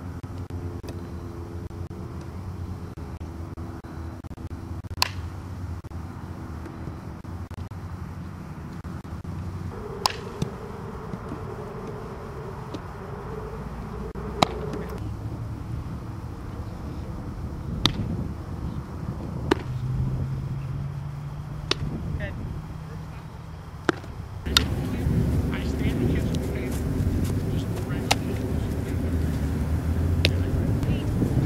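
Softball fielding practice: about seven sharp cracks of ball on bat or glove, a few seconds apart, over a steady low outdoor rumble that grows louder about 24 seconds in.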